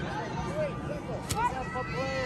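High-pitched voices of children shouting and calling out at a distance across a playing field, with one sharp knock a little over a second in.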